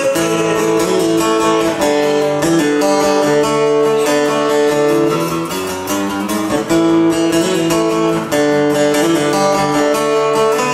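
Acoustic guitar strummed in a steady rhythm through a passage of country-song chords, with no singing.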